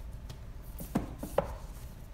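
Books being handled on a bookshelf: a few light knocks and scrapes as one paperback is put back into the row and the next book is drawn out, with the sharpest knock about a second and a half in.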